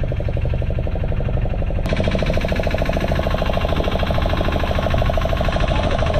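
Fishing boat's engine running with a fast, even pulsing beat. The tone turns abruptly brighter about two seconds in.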